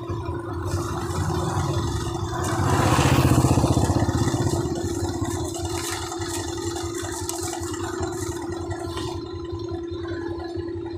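Motorcycle engine idling with a steady low pulsing rumble and a constant hum. A louder rush of noise swells and fades between about two and five seconds in.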